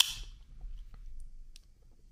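Shirogorov F95 folding knife flipped open: one sharp snap right at the start as the blade swings out and locks, with a brief ring. A few faint ticks of the knife being handled follow.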